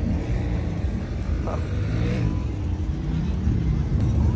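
Lifted off-road pickup truck's engine running under throttle, its pitch rising and falling, as the high-centred truck is driven to crawl off the rocks.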